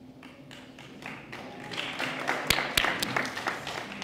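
Applause from a small audience, building about a second in and dying away near the end, with two sharp knocks close together in the middle.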